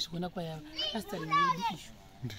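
Voices: a woman talking and young children chattering as they play.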